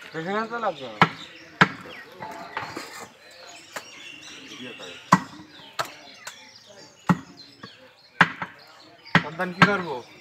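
Heavy butcher's cleaver chopping beef on a wooden chopping block: sharp chops at irregular intervals, roughly one a second.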